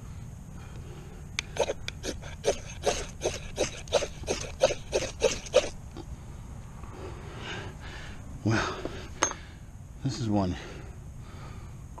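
Quick repeated scraping strokes of a metal striker on a magnesium bar, about fourteen strokes at roughly three a second, shaving off magnesium dust for fire lighting.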